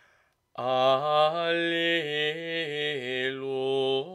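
Solo unaccompanied male voice singing Gregorian chant. After a brief pause it comes in about half a second in, holding each note and moving by small steps from one pitch to the next.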